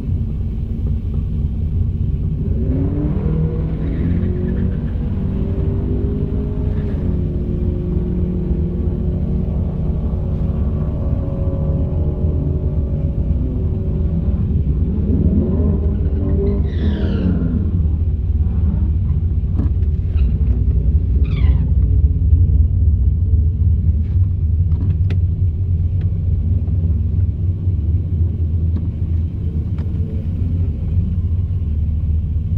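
A Holden VZ SS Ute's 5.7-litre V8 idling steadily, heard from inside the cabin. Over it, another car's engine revs up and down about two seconds in and again around fifteen seconds in, with a few short high sweeps after the second rev.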